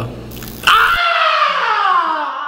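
A short hissing crackle from a key-fob-shaped novelty taser going off, then a long cry that slides slowly down in pitch.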